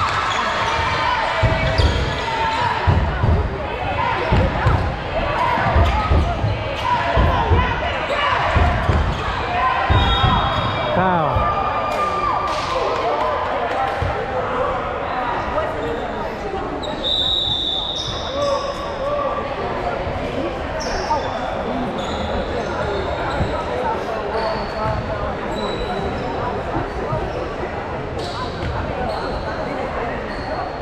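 A basketball dribbled on a gym floor, the bounces coming thick and fast for about the first twelve seconds and more sparsely after, over indistinct voices and crowd chatter echoing in a large gym.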